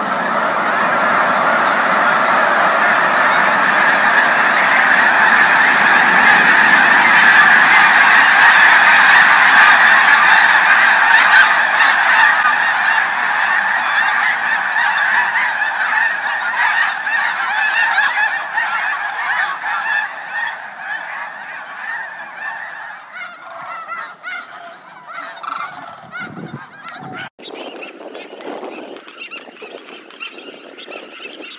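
A huge flock of snow geese honking all at once in a dense, continuous din as the birds lift off together. The din is loudest in the first ten seconds or so. After about twenty seconds it thins out to scattered single honks.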